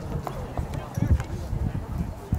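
Indistinct distant voices from a soccer field, with irregular low thumps that are loudest about a second in.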